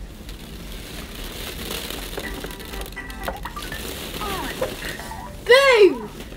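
Rustling of a nylon pop-up play tent and plastic ball-pit balls as children play inside. Near the end comes a short, loud rising-and-falling vocal call from a child, the loudest sound.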